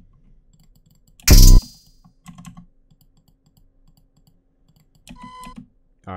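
Faint clicking of a computer keyboard and mouse, broken by one loud, short sound hit from the music software about a second in and a brief pitched blip near the end.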